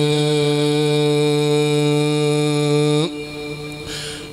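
A man's voice chanting a Mouride khassida (devotional Arabic poem), holding one long steady note at the end of a line; the note stops about three seconds in.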